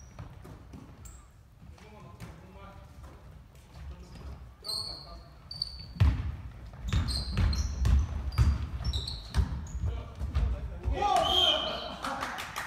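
Basketball game on a hardwood gym court: the ball bouncing and thudding, short sneaker squeaks, and players calling out, echoing in the large hall. It gets busier and louder about halfway through, with a shout near the end.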